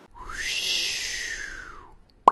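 Animated logo intro sound effect: a swelling whoosh carrying one tone that rises and then falls again over about two seconds.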